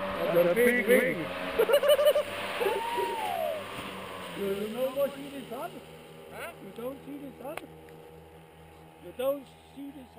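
Voices talking over the steady low drone of a paramotor engine running on the ground. The sound fades down through the second half.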